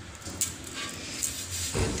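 Handling noise from a ceramic floor tile being lifted and turned over a stack of tiles, with two light clicks or knocks, one near the start and one around the middle.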